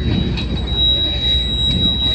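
A steady high-pitched tone starting under a second in and held to the end, over a low, even rumble of outdoor background noise.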